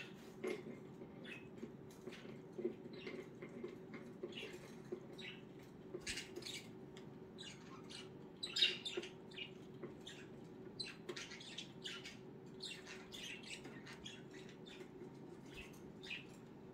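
Budgerigars chirping and chattering in short, irregular calls, the loudest about halfway through, over a faint steady low hum.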